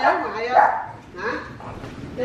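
A young child's voice making a few short, high utterances.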